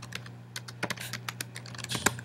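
Typing on a computer keyboard: a quick, irregular run of key clicks as a short command is entered, over a faint steady low hum.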